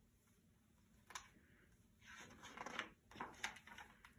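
Faint rustle of a picture book's page being turned, with a small click about a second in and a few light taps near the end.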